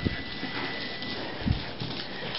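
A crowd of small dogs scrambling over a wooden floor, claws clicking and scrabbling, with two low thumps about a second and a half apart.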